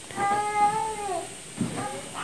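A single drawn-out, animal-like call lasting about a second, holding one pitch and then dropping at its end.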